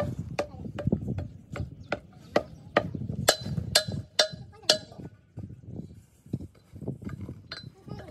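A steel pipe knocking repeatedly against a cast-iron truck brake drum, about two strikes a second, each with a brief metallic ring, as blackened lumps left from casting are broken loose and knocked out of the drum.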